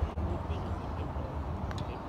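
Wind rumbling on the microphone, a steady low rumble, with a faint click near the end.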